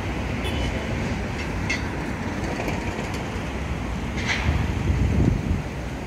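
City street traffic: a steady low rumble of passing vehicles that swells briefly near the end, with wind buffeting the microphone and a few faint clicks.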